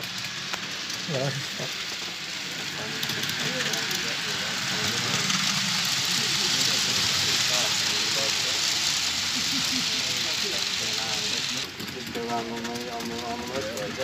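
Model freight train rolling past on the layout: steady wheel-on-rail noise that grows louder as the cars draw near, then cuts off suddenly near the end. Voices murmur underneath.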